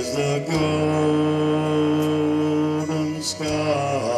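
A man singing into a microphone through a PA, holding one long note for about three seconds before moving to a new note near the end.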